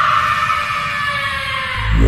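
A loud, harsh screeching sound effect that sinks slightly in pitch and fades. A deep bass beat of trailer music comes in near the end.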